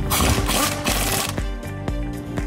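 Air-powered wrench turning a front suspension bolt, running for about the first second and a half, then a few sharp clicks, over background music.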